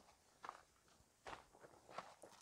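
Near silence broken by a few faint footsteps on gravelly dirt ground.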